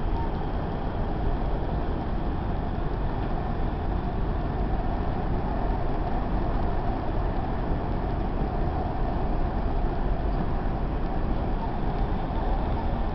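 Steady running noise of a moving vehicle heard from inside the cabin: an even rumble with no breaks.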